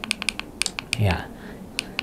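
A quick, uneven run of light clicks, close together like typing, most of them in the first second and one more near the end, while the presentation slide is being changed.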